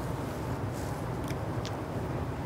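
Steady low room hum, with a few faint soft clicks of a man chewing a mouthful of food.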